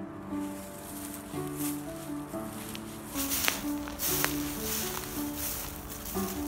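Background music with slow held notes, over footsteps crunching through dry fallen leaves that grow louder in the second half.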